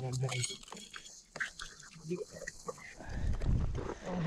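Rock hammer scraping and knocking in a crumbly rock-and-mud crystal pocket, in a series of small irregular clicks. A low rumble on the microphone swells in the last second.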